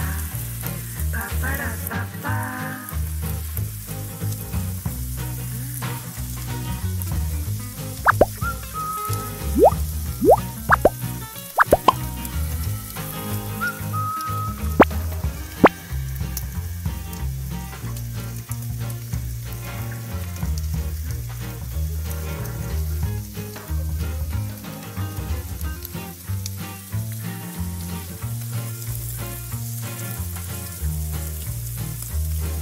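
A thin crepe sizzling as it fries in a small nonstick pan, under background music with a steady beat. Between about eight and sixteen seconds in, a handful of sharp clicks as small candies are dropped onto the crepe in the pan.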